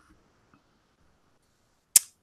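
Near silence on a voice call, then a single sharp click just before the end.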